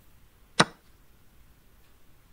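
A single sharp click about half a second in: an online chess site's move sound effect, the capture sound as a pawn takes a piece.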